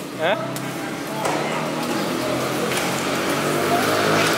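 A motor vehicle's engine running close by, a steady hum that sets in about a second in and grows a little louder.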